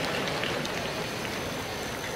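Large concert audience applauding, a steady spread of clapping that slowly dies down.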